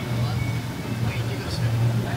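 A person beatboxing into a handheld microphone cupped against the mouth, making a steady low buzzing bass drone with small mouth noises over it.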